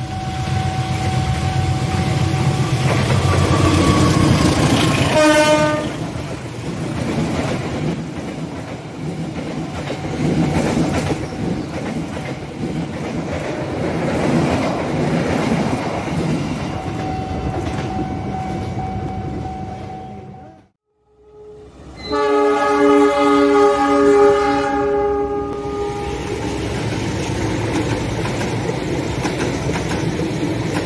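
An Indonesian CC201 diesel-electric locomotive sounds its air horn for about five seconds, then the running noise of a passing train goes on. After a brief dropout, a second train's multi-note horn blows for about three seconds, followed by more passing-train noise.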